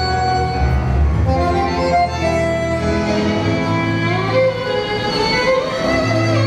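Tango orchestra music, violins carrying a melody of held, sliding notes over a steady low accompaniment.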